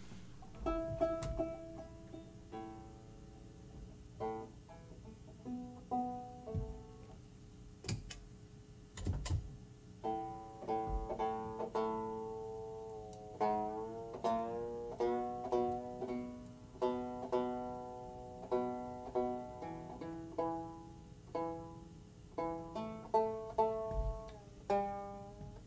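Open-back banjo being tuned: single strings plucked and left to ring, with some notes sliding up in pitch as a tuning peg is turned. Two short handling knocks come about a third of the way in.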